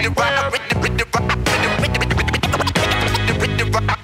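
Hip-hop beat with turntable scratching: a vinyl record pushed back and forth in quick strokes, making short up-and-down sweeps over the drums and bass.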